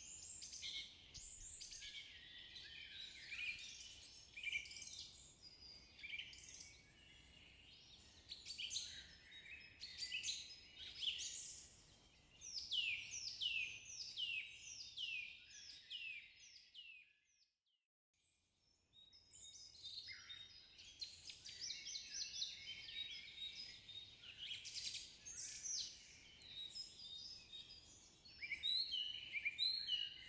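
Faint chorus of small songbirds, dense overlapping short falling chirps and trills. The birdsong cuts out completely for about two seconds midway, then resumes.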